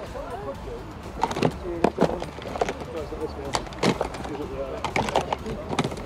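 Background chatter of other shoppers and sellers at an outdoor sale, no clear words, with a low rumble of wind on the microphone. Scattered short clicks and knocks run through it, about eight of them.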